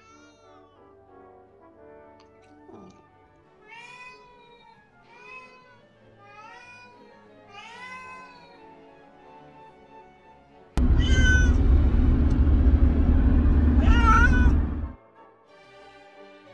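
Lynx point Siamese cat meowing over soft background music: about five separate meows, each rising then falling in pitch, the first with a yawn and the later ones begging for food. Just before the last third a loud steady noise cuts in for about four seconds, with two more meows through it, then stops suddenly.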